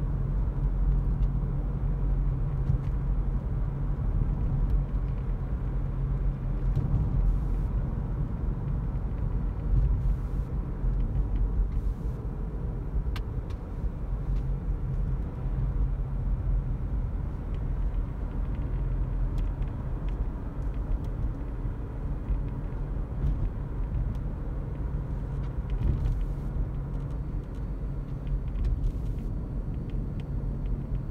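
Cabin noise of a Toyota Auris Hybrid on the move: steady low road and tyre rumble, with a low drone that weakens about halfway through.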